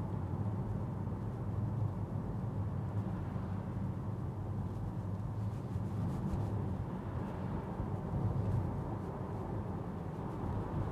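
Steady low road and tyre rumble inside the cabin of an electric Tesla Model 3 on 20-inch wheels, cruising at around 25 mph with no engine note.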